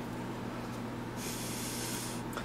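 A person breathing out sharply through the nose: a short hiss lasting under a second, starting a little past the middle. A steady low hum runs underneath.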